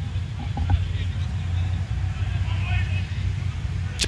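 Steady low rumble of pitch-side ambience, with faint distant shouts about halfway through.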